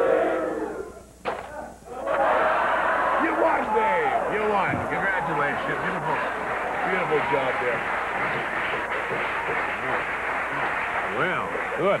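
A single sharp snap about a second in, typical of a spring mousetrap going off, then a studio audience laughing and shrieking loudly for the rest of the time.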